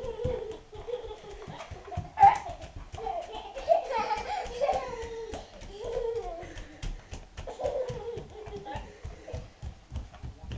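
A toddler babbling and squealing in a high voice while walking, with the loudest squeal about two seconds in. Footsteps knock on a wooden floor underneath.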